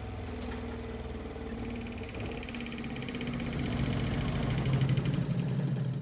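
Spin basket of a portable twin-tub mini washing machine running, its motor humming steadily and growing louder, with a buzzing rattle as the machine shakes; it cuts off right at the end.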